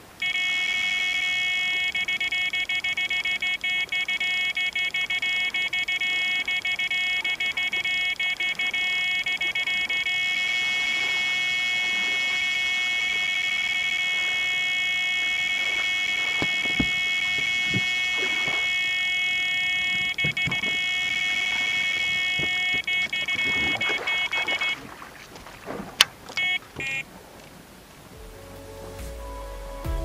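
Electronic carp bite alarm sounding one unbroken, steady high tone for about 25 seconds, the sign of a fish running hard with the line, then cutting off abruptly, followed by a few short beeps. Scattered clicks and knocks come in the second half.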